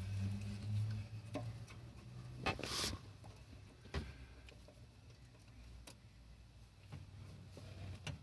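Small metal clicks and taps of a hand wrench working the terminal bolts of a motorcycle battery, with a short scrape a little under three seconds in.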